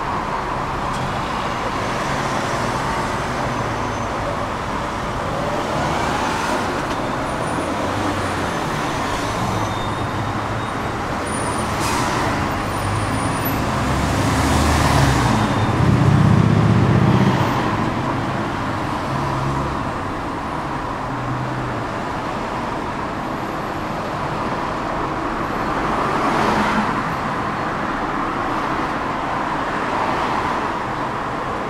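Road traffic passing a tram that stands at a stop, heard from inside the car: a steady wash of cars going by, with a low rumble that swells about halfway through as a lorry draws alongside.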